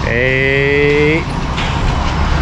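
A man's drawn-out hesitation sound, a held 'eee' lasting about a second, over a steady low outdoor rumble of traffic or wind.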